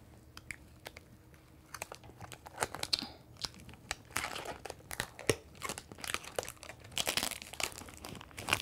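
Thin clear plastic protective film crackling and crinkling as it is peeled off a hardboard sheet and handled. The crackles are rapid and irregular and start about two seconds in.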